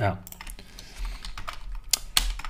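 Typing on a computer keyboard: a quick run of keystrokes through the second half, the sharpest click near the end.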